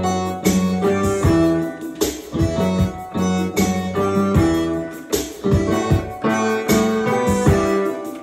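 Digital keyboard played energetically: a beat of punchy, rhythmic chords over sustained bass notes, with a sharp attack about every half second.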